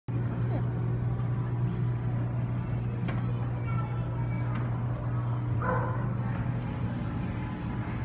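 A steady low hum of aquarium equipment over a background of shop noise, with a faint voice briefly about six seconds in.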